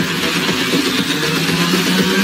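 AI-generated (Sora 2) car-chase soundtrack: a car engine running with road noise, steady and without breaks.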